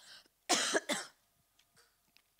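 A woman coughs into a handheld microphone: a short cough in two quick parts about half a second in.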